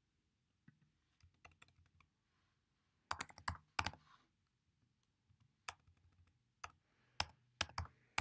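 Faint computer keyboard keystrokes: a few scattered taps, a quick run of keys about three seconds in, then single presses spaced out toward the end.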